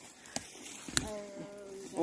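Two light clicks, then a person's voice holding one steady, slightly falling note for about a second in the second half, like a drawn-out "ohh" or hum.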